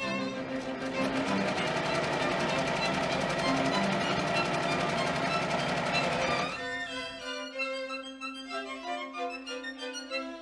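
Singer sewing machine running steadily at speed, stitching for about six and a half seconds and then stopping abruptly. Background string music with violin plays throughout.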